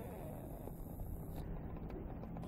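Quiet, steady outdoor background noise, a low rumble with no distinct event; the hens make no clear sound.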